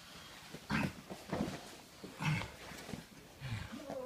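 Heavy breaths and grunts of exertion from two grapplers in a Brazilian jiu-jitsu roll, about four short bursts a second or so apart.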